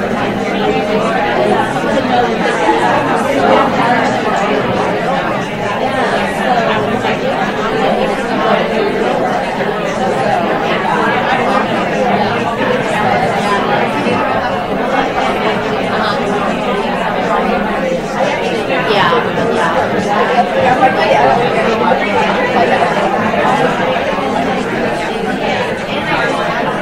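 Many people talking at once in pairs in a large room, a steady hubbub of overlapping conversations.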